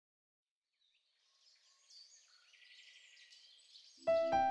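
Near silence, with faint bird chirps and calls.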